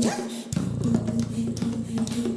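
Music built from a mouth harp (jaw harp) droning on one steady note over regular percussive beats. Right at the start there is a short sweep in pitch, and the bass drops out for about half a second before the beat comes back.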